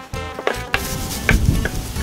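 Kitchen knife chopping and cutting on a wooden cutting board, a few sharp taps with a crisp crunch from about the middle on, under background music.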